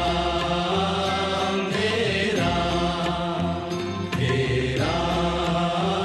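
A Hindi devotional bhajan: a voice holding long drawn-out sung notes over continuous musical accompaniment, a new phrase every couple of seconds.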